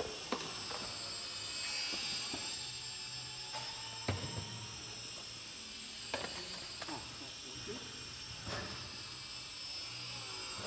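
Small electric motor and propeller of an indoor radio-controlled model Albatros biplane in flight, a high whine that wavers up and down in pitch as the throttle changes. A few sharp clicks sound over it, and a low steady hum lies underneath.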